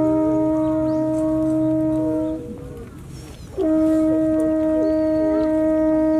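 A horn sounding the deer-calling signal that summons the deer to feed: one long held note that stops about two seconds in, then, after a pause of about a second, the same note held long again.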